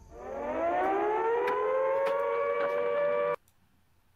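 An air-raid siren winding up, its pitch rising and then holding a steady wail, cut off abruptly a little over three seconds in.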